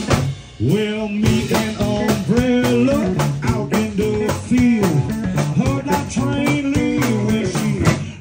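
Live blues band playing: guitar over a drum kit beat, with a melody of notes that slide up and down. The music drops back briefly about half a second in, then carries on.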